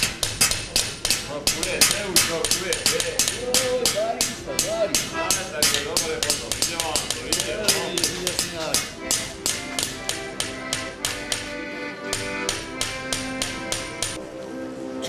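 Hammers peening scythe blades on small peening anvils: a steady run of sharp metallic strikes, several a second, each with a short ring. Voices sing over the strikes, wavering in the first half and holding longer notes near the end.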